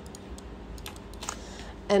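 A handful of separate clicks from a computer keyboard and mouse being worked at a desk, spread over about two seconds.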